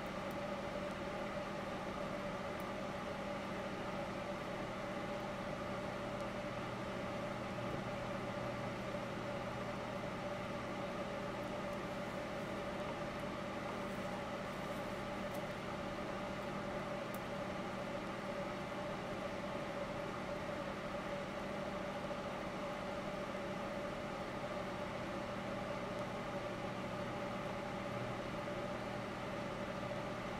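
A cup turner's small electric motor running steadily: an even low hum with a few steady tones.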